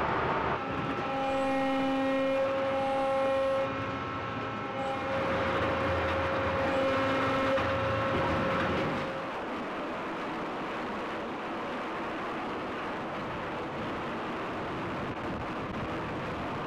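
Engine-room machinery of a 140-foot Bay-class icebreaking tug running: a steady mechanical hum with several high, steady whining tones. After about nine seconds the whine fades, leaving an even, slightly quieter rumble.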